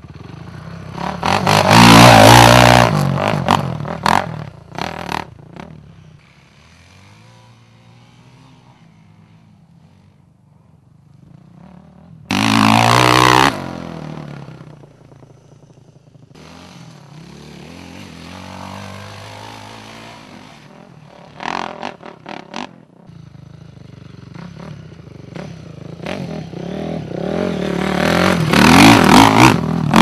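Off-road dirt bike engines revving hard on steep descents and climbs, in loud bursts with quieter stretches between: a loud burst about two seconds in, a short sharp one near the middle, and a long rise in revs toward the end as a bike climbs the slope.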